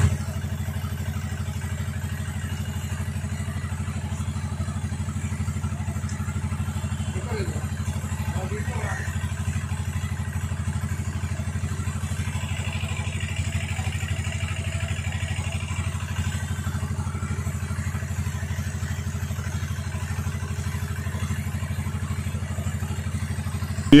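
A steady low droning hum, even and unchanging, with faint voices in the background.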